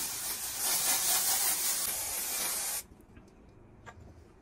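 Aerosol hair identifier spray can hissing in one continuous spray of about three seconds, cutting off suddenly a little before three seconds in.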